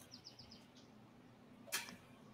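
A faint, near-silent pause with a low steady hum. A quick run of faint high chirps, like a small bird's, comes in the first half second, and a brief breathy rush follows near the end.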